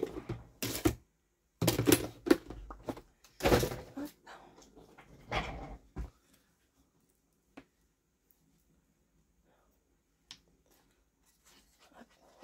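Four short, loud, noisy bursts of handling in the first half, like objects being moved or rummaged through, followed by near quiet with a few faint clicks.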